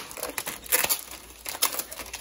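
Clear plastic food packaging of a pasta kit crinkling and crackling as it is handled and opened, with a few sharp crackles.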